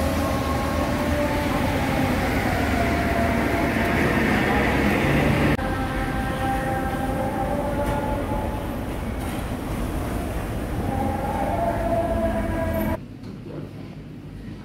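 Steady city street traffic: a bus and cars running on a wet road, with a faint engine whine over the rumble and hiss of tyres. Near the end the sound drops suddenly to a much quieter indoor room tone.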